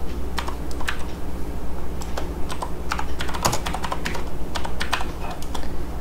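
Typing on a computer keyboard: irregular runs of keystroke clicks. A steady low hum runs underneath.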